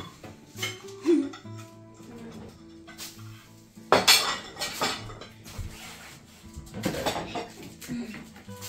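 Knife and cake server clinking and scraping against ceramic plates as a layered cake is cut and served, with a sharp clatter about four seconds in and another near the end. Faint music plays underneath.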